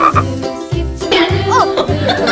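A croaking sound like a frog's over background music with a steady bass beat. A brief rising-then-falling tone comes about one and a half seconds in.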